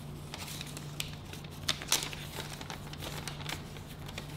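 Sheets of paper rustling and crinkling as they are unfolded and handled, with a couple of sharper crackles a little before two seconds in. A steady low hum runs underneath.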